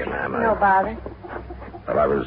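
A dog barking and whimpering, heard together with voices.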